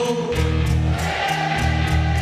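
Live band music with several voices singing, over a bass line and a steady drum beat of about three strokes a second.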